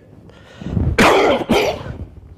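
An elderly man coughing twice, the coughs about half a second apart, the first about a second in.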